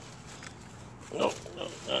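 Short grunts from a fawn pug puppy as it noses at ivy, with a spoken "no" about a second in.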